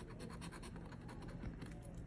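A large metal coin scraping the coating off a scratch-off lottery ticket in faint, quick, repeated strokes.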